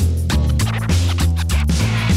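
Background music with a deep, repeating bass line and a steady beat.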